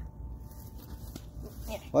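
Quiet background with a low rumble and a faint steady tone, then a man's voice speaking briefly near the end.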